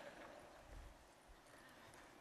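Near silence: faint room tone with a soft low thump a little under a second in.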